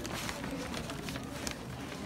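Quick footsteps and handling rustle of someone walking while carrying the camera, over steady outdoor background noise.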